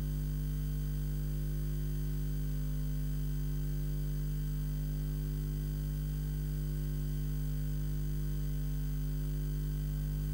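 Steady low electrical mains hum with a buzzy edge, unchanging throughout.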